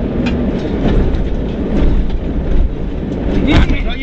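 Rally car driving fast on a gravel road, heard from inside the cabin: steady engine and road noise with frequent clicks and rattles.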